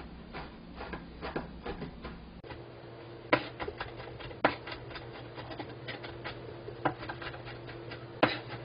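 Chinese cleaver chopping drained canned corn kernels on a cutting board: a quick, uneven run of light knocks, with a few harder strikes.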